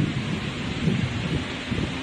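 Steady rushing, rumbling noise, heaviest in the low end, on a handheld phone's microphone, with faint voices under it about a second in.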